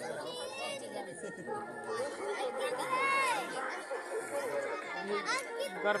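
Many people talking at once, overlapping chatter with some higher voices calling out, about halfway through and again near the end.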